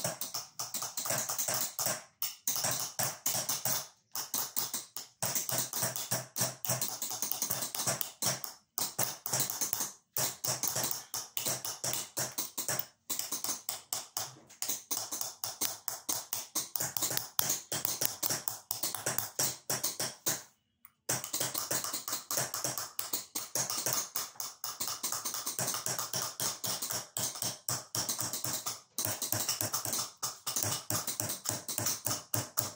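Small hammer rapidly tapping a steel engraving chisel into a metal plate, hand qalamzani (chased) engraving: a quick, even run of light metallic taps, broken by a few short pauses.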